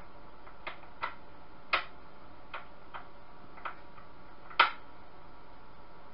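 About seven short, sharp clicks at uneven intervals, two of them louder, about a third and three quarters of the way through, over a steady low hiss.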